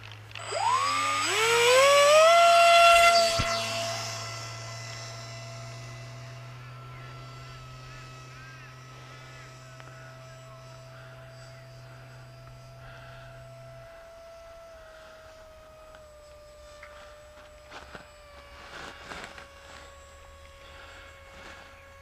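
Electric motor and propeller of a Ranger 1600 RC plane spooling up to full throttle for launch with a rising whine, loudest in the first few seconds. It then runs on as a steady, fainter whine that drops slightly in pitch later on.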